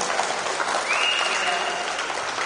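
Audience applauding, with a steady high tone sounding for about a second in the middle.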